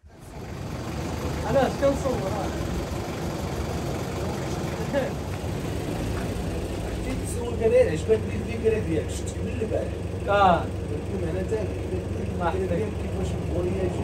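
SUV engine idling with a steady low rumble.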